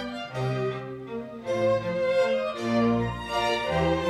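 Chamber string ensemble of violins and cellos playing classical music: sustained bowed chords that change every half second to a second and get louder in the second half.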